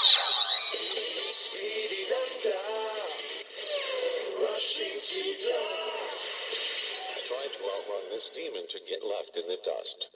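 Electronic music with a processed voice playing from the small built-in speaker of a Kamen Rider Zero-One Hiden Zero-One Driver toy belt, thin and narrow in range. It is the belt's transformation sound sequence, and it cuts off suddenly at the end.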